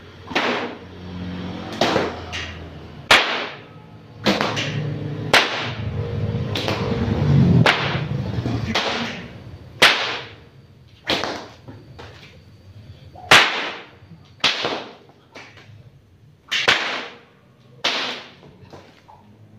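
A 2.5-metre pecut bopo, a Ponorogo cemeti whip, cracking about a dozen times, each crack sharp and sudden and one to two seconds apart. Through the middle of the stretch there is a continuous rushing noise between the cracks.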